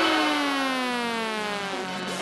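In an electro swing mix, the beat drops out and a single held tone slides slowly and smoothly down in pitch for about two seconds. It is a wind-down transition effect, like a siren winding down, before the music picks up again.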